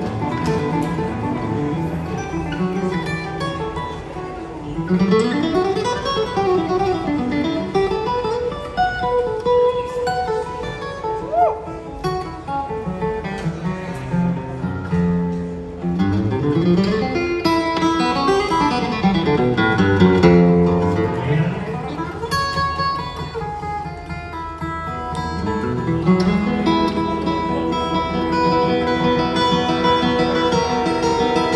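Live acoustic bluegrass string band playing an instrumental, led by two flat-picked acoustic guitars, with sliding notes that sweep up and down in pitch several times.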